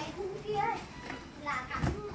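Background chatter of children's voices, with a single knock near the end.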